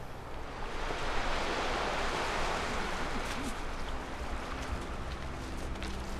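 Waves washing on a pebble beach: a steady wash of surf that swells and eases, with a few sharp clicks in the second half.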